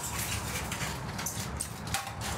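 Soft scuffing and scattered light clicks of handling noise as a tape measure is moved about over the ribbed floor of an empty van's cargo area.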